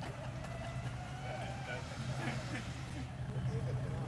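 A steady low engine hum, with faint voices of people talking.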